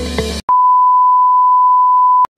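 Intro music cuts off abruptly, and about half a second in a TV colour-bars test tone begins: one loud, steady, single-pitch beep.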